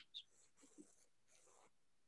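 Near silence, with two faint, brief soft hisses.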